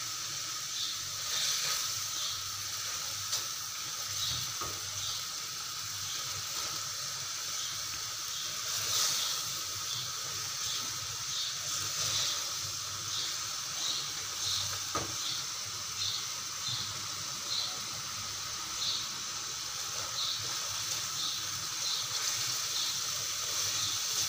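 Boneless chicken pieces with ginger-garlic paste frying in oil in a metal pot, a steady sizzle with small crackles, while a silicone spatula stirs them now and then. The chicken is being fried until the water from the ginger-garlic paste cooks off.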